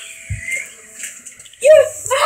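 A soft hiss with a brief low thump early on, then a person's voice making a loud drawn-out vocal sound near the end.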